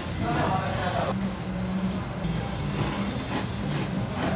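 A man slurping thick Jiro-style ramen noodles: a long noisy slurp in the first second, then a few shorter ones later on. A low steady hum runs underneath.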